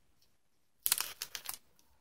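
Trading cards being handled: a quick run of light clicks and taps starting about a second in and lasting under a second.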